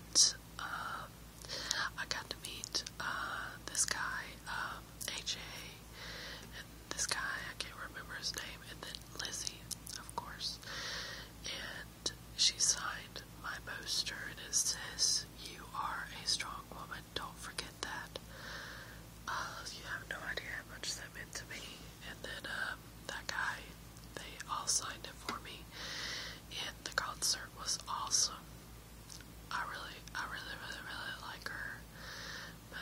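A woman whispering close to the microphone, phrase after phrase with short pauses between them.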